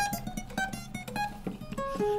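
Acoustic guitar picking a short run of single notes, each plucked and ringing briefly, quieter than the sung verse around it.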